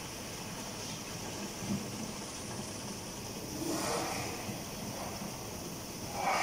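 Liquid running steadily from the nozzles of a two-nozzle weighing filling machine into two plastic jerrycans as they fill, with a brief louder swell about four seconds in.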